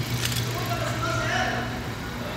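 Honda Accord's engine idling with a steady low hum, and a short click just after the start.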